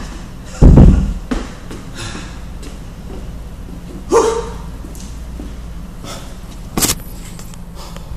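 A 48 kg kettlebell lowered from overhead and set down on a rubber gym floor: one heavy, deep thud just under a second in, over a steady low hum.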